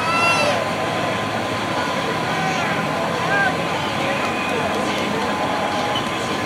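Indistinct voices with a few short, high-pitched calls, over a steady mechanical hum with a constant whine.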